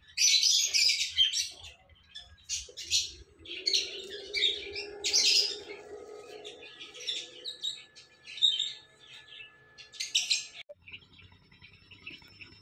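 Birds chirping in quick, irregular bursts, with a faint steady hum underneath.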